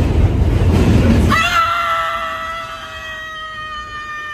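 A woman's single long scream, held at one high pitch, starting about a second in. Before it there is a loud low rumble with voices under it.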